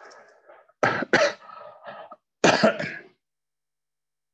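A man coughing: two coughs close together about a second in, then a third about a second later.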